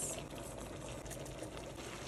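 Tomato sauce simmering in a pan, a faint steady bubbling with small scattered pops.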